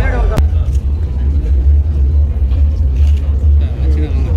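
A loud, steady low rumble, with a single sharp click about half a second in where the voices drop away.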